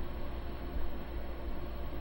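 Steady background hiss with a low hum and no other events: the noise floor of an old broadcast recording, heard in a break in a man's speech.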